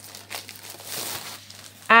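Clear plastic wrapping on a craft magazine crinkling as the magazine is handled and turned.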